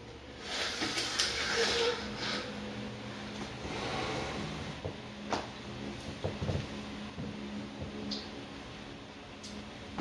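Rustling of a fabric tapestry, with scattered light knocks and clicks, as it is handled and hung on a wall; a faint steady low hum runs underneath.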